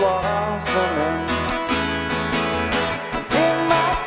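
Acoustic guitar strummed in a steady rhythm, with a man's voice singing over it in places.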